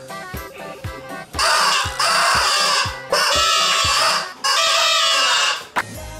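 A multi-horn mouth-horn toy strapped in a player's mouth, blown by breath: three loud blasts, each a little over a second long, with a rough, wavering pitch. Background music with a steady beat runs underneath.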